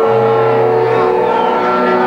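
Live punk rock band playing: distorted electric guitars and bass holding long sustained notes, the bass note moving up about a second in.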